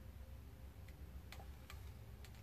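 Faint, sharp button clicks, about three a little under half a second apart in the second half, as a menu selection is stepped down one item per press. A low steady hum runs underneath.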